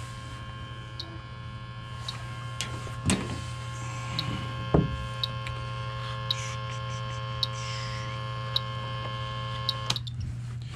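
Electronic refrigerant leak detector ticking slowly and evenly, about once a second, over a steady electrical hum and whine. The slow tick means it is picking up no refrigerant, and the technician concludes there is no leak at the coil. Two handling knocks come about three and five seconds in, and the whine cuts off suddenly at the end.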